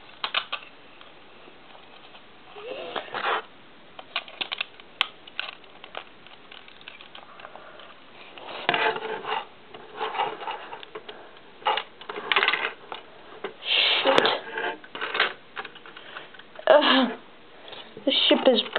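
Plastic Lego pieces clicking and clattering in short, scattered bursts as a built Lego model is handled and comes apart, with a few brief vocal noises in between.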